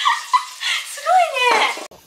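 Loud, high-pitched wordless voice sounds: squeals and yelps that slide up and down in pitch, cut off abruptly just before the end.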